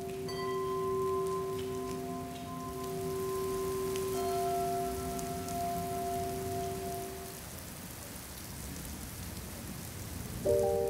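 Steady rain falling on wet ground and a puddle. Long ringing bell-like tones are struck near the start and again about four seconds in, then die away around seven seconds in.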